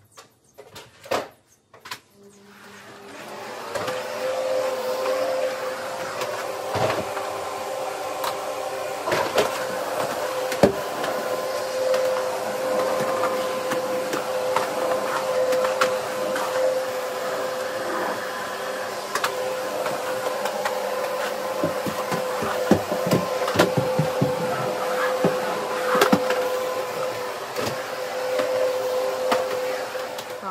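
Canister vacuum cleaner switched on about two seconds in, its motor spinning up and then running steadily with a constant whine. Scattered knocks and clicks come through as it is used.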